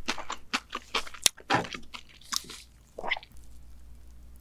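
Close-miked chewing and crunching of food, with many short wet crackles over the first two seconds and one sharp click about a second in, then quieter chewing near the end.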